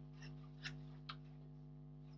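Three faint, short clicks spread over the first second or so, from a paper pattern and scissors being handled, over a steady low hum.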